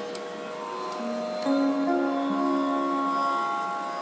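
Electronic keyboard playing a few slow, held notes that ring on and overlap, with new notes coming in about a second in and again around a second and a half and two and a half seconds in.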